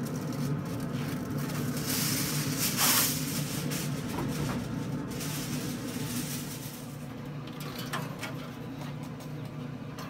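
Vehicle engine idling, a steady low hum, with a swell of hiss that peaks about three seconds in.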